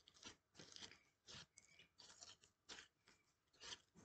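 Faint, irregular clicks and crackles of a Peachybbies baby axolotl slime being squished and stretched between the hands.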